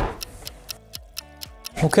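Clock-ticking sound effect over a short held musical tone, about five or six quick ticks a second, marking an hour's wait passing; it stops as a man starts speaking near the end.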